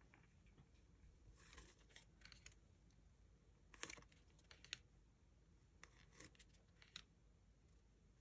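Near silence with a few faint, scattered rustles and light clicks: a packet of paper bookmarks being handled and leafed through.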